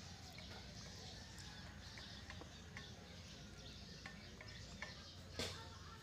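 Quiet outdoor background with scattered faint clicks and one sharper click about five and a half seconds in.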